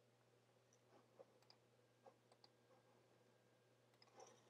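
Near silence: faint room tone with about five soft, short clicks between one and two and a half seconds in.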